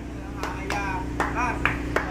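Several people clapping hands, about five sharp, irregular claps, mixed with a few short vocal sounds from the group. A steady low hum runs underneath.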